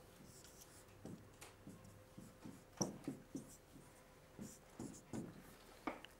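Marker pen writing on a whiteboard: a faint, irregular series of short strokes and taps as an equation is written out.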